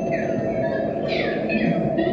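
Live electronic noise improvisation played through an amplifier: a dense steady rumble, with high whistling tones sweeping up and down above it, the strongest about a second in.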